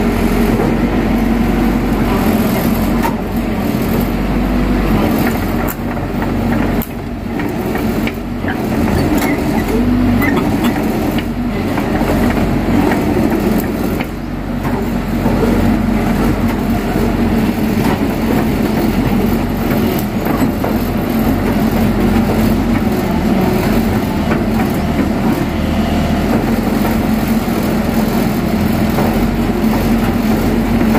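Diesel engine of a Kobelco Yutani crawler excavator running steadily under load as the boom and bucket dig into dirt, with a few brief dips in level along the way. The engine has just been rebuilt, and the digging is its load test.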